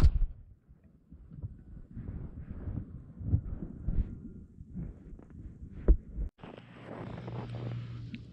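Muffled, irregular low thumps and rumbling picked up by a GoPro lying buried in snow after a snowboard crash. About six seconds in it cuts off suddenly and a steady low hum follows.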